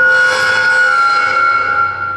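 A loud, steady horn-like tone sounding several pitches at once, held for about two seconds and dying away near the end.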